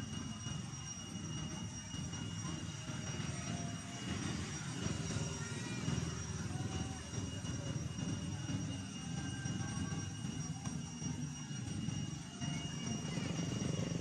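A steady low engine drone, with a few faint bird chirps and a thin steady high whine over it.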